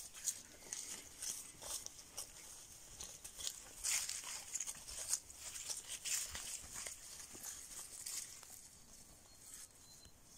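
Irregular rustling and crunching in grass and dry leaves as pigs forage and footsteps move through the undergrowth, busiest around four to six seconds in.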